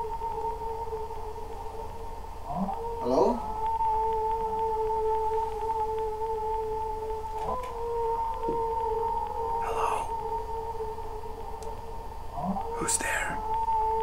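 Eerie sound-design drone: a steady hum with its octave, crossed a few times by sliding sweeps in pitch.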